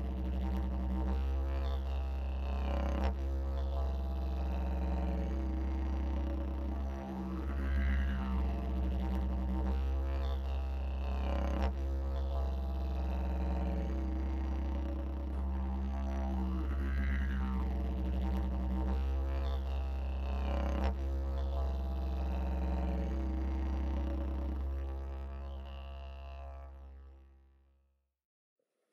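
Didgeridoo music: a continuous deep drone whose tone sweeps up and down, the pattern coming round again about every nine seconds, fading out over the last few seconds.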